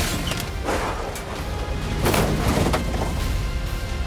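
Modified RVs ramming each other: several heavy crashing hits of metal bodywork over the low rumble of their engines, with a music soundtrack underneath.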